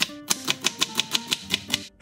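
Chef's knife rapidly slicing an onion, the blade tapping a plastic cutting board about seven times a second and stopping near the end. Light plucked-guitar music runs underneath.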